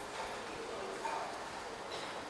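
Indoor room ambience with faint, indistinct voices in the background.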